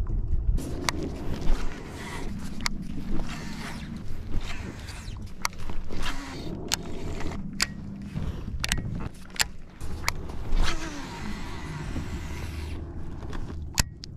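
Baitcasting fishing reel being cranked with a steady whir, with scattered sharp clicks and knocks from handling the rod and gear in a plastic kayak.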